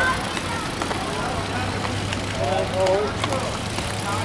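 Street ambience of people's voices calling out briefly, at the start and again near the end, over general outdoor noise. A steady low engine hum sets in about a second and a half in.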